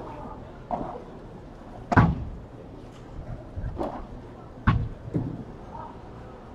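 Padel rally: sharp irregular pops of the ball being struck by rackets and rebounding off the court and its glass walls. There are about six hits in five seconds, the loudest about two seconds in and another later on.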